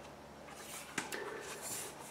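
Faint handling of a cardboard board book as a page is turned, with a short click about a second in.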